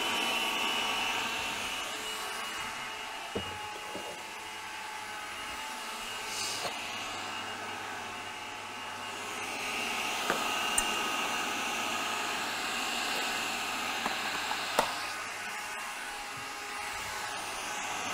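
Electric food processor running steadily, its blade churning a thick dip loosened with tahini and olive oil, with a few small clicks.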